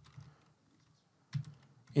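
Computer keyboard typing: a few keystrokes, a pause of about a second, then a few more keystrokes.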